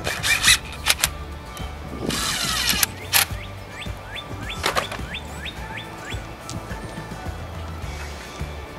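Background music, with a short burst of a power drill driving a screw into a pressure-treated 1x2 board about two seconds in, and a few sharp knocks of wood.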